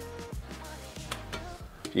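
Quiet background music with held low notes, over a few faint scrapes and taps of a metal plate pushing charcoal ash around a stainless steel tray.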